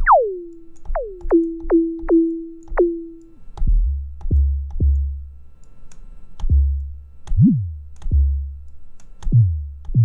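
Synthesized kick drum from an Axoloti Core patch, triggered again and again while its envelopes are being adjusted. Each hit is a pitch that drops steeply. The first few settle on a held middle tone; from about three and a half seconds in they drop much lower, into a deep, long-ringing low end, and the last few hits decay faster.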